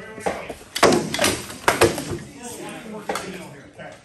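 Rattan swords striking shields and armour in a sparring exchange: about six sharp knocks, several in quick pairs in the first two seconds and a last one about three seconds in.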